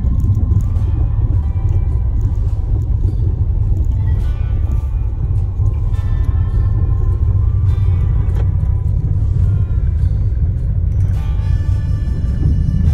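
Car driving over a corrugated (washboard) dirt road, heard from inside the cabin: a loud, steady low rumble from the tyres and suspension, broken by frequent jolts and rattles as the car bounces over the bumps.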